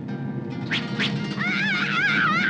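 A girl screaming, her high voice wavering up and down, begins about one and a half seconds in over a low, steady horror-score drone. Two short sharp sounds come just before the scream.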